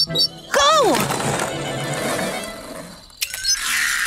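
Cartoon background music with a noisy sound effect that runs for about two seconds after a shouted "Go!", and another short noisy effect near the end.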